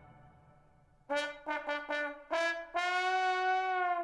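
Music fades out, then about a second in a brass instrument plays four short notes followed by one long held note.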